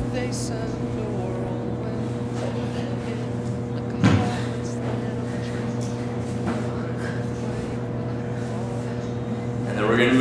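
Steady low hum with a few constant tones, like ventilation or electrical hum, with one short thump about four seconds in.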